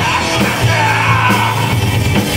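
A rock band playing live: a singer's vocal line over electric guitar and drums, with a steady held bass note underneath.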